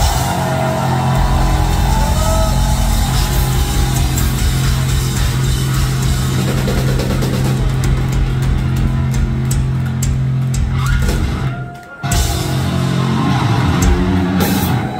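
Metalcore band playing live through a venue PA: distorted guitars, bass and drums over a low note held steadily underneath. The sound drops out abruptly near the end, then picks up again.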